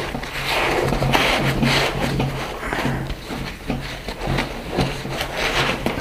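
Nylon fabric and webbing rustling and scraping as a backpack's rolled-up waist belt is pushed and tucked into the sleeve behind its back panel, with a low hum underneath.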